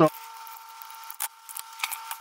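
Quiet background hiss with two faint steady high-pitched tones, broken by a small sharp click about halfway through and a couple of lighter clicks near the end.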